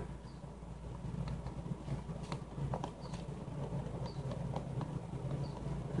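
Hands pressing and smoothing a slab of clay around a mold on a cloth-covered board: soft rustling with scattered faint clicks and taps, over a low steady hum.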